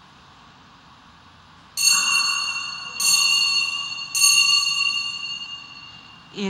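Altar bell struck three times, about a second apart, each stroke ringing out and fading, marking the priest's communion from the chalice at Mass.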